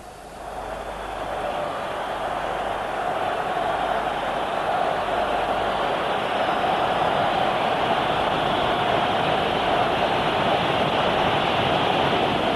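Stadium crowd noise from a large football crowd: a dense, steady wash of many voices that swells over the first second or two and then holds.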